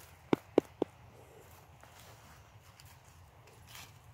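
Three short, sharp knocks in quick succession, about a quarter of a second apart, within the first second, followed by near-quiet outdoor background.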